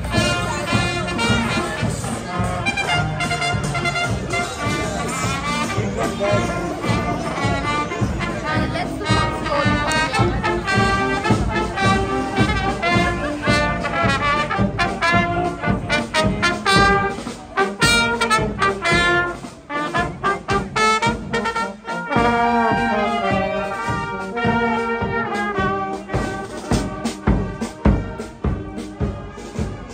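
A marching brass band with trumpets and larger brass horns playing a tune with a steady beat as it passes.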